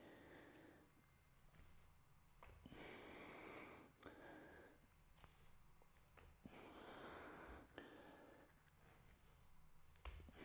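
Near silence, with a man's breath heard faintly twice, each breath about a second long, as he hops on his hands during an exercise. A few faint soft taps come in between.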